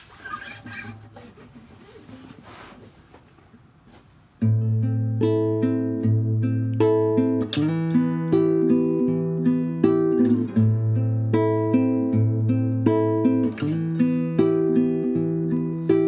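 Nylon-string classical guitar fingerpicked in a repeating pattern of plucked notes over a held low bass note. It starts suddenly about four seconds in, after a few seconds of faint room noise.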